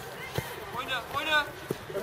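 Footballs being kicked: two sharp thuds about a second and a half apart, amid children's voices calling out.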